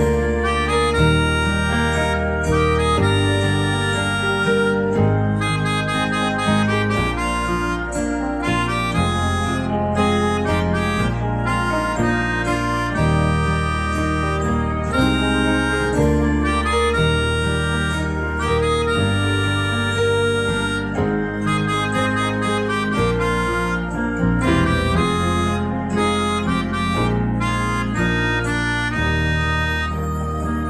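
Keyboard melodica, played through its mouth tube, carrying a melody of held and quicker notes over an accompaniment with a low bass line.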